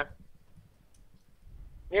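A quiet pause in a man's speech heard over a telephone line: a faint low hum with a few faint clicks. His voice, thin and cut off at the top as phone audio is, ends at the very start and comes back just before the end.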